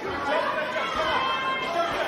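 Boxing-arena crowd chatter: many voices talking and calling out at once, echoing in a large hall.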